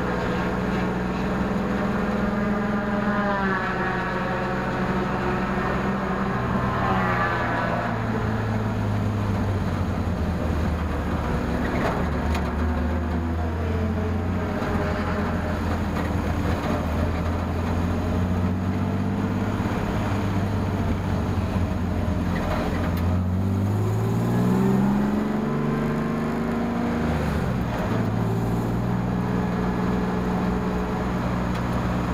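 Car engine running steadily at low speed, heard from inside the cabin of a ChumpCar endurance race car, its pitch shifting a few times; about three quarters of the way through it climbs as the car accelerates, then drops back.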